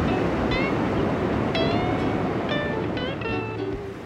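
Ocean surf breaking, a steady rush of white water, with music over it: short high notes that slide in pitch, a longer held tone in the middle, and a few stepped lower notes near the end as the surf noise fades.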